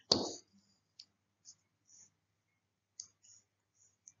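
A brief breathy vocal sound right at the start, then a handful of faint, small clicks, about one every half second to a second.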